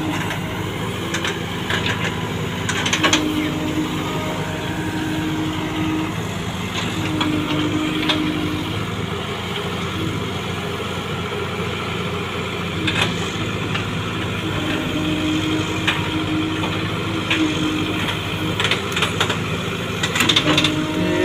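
Case 851EX backhoe loader's diesel engine running steadily while the backhoe digs, with a whine that rises in and drops out several times as the arm works. A few short knocks are heard as the bucket handles earth.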